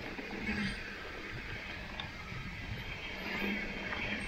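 Mountain bike rolling fast down a dirt trail: steady tyre rumble with the bike rattling and clicking over bumps and roots.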